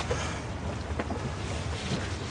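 Vespa scooter's small engine idling with a low, steady rumble, and a light knock about a second in.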